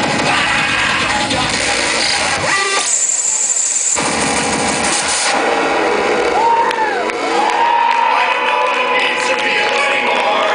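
Loud live electronic music through a club PA, its bass dropping out for about a second and a half near the three-second mark. In the second half a crowd cheers and whoops.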